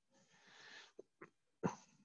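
A soft breath near the microphone, then two small clicks and one sharper, louder knock just past the middle, the small sounds of someone working at a computer desk.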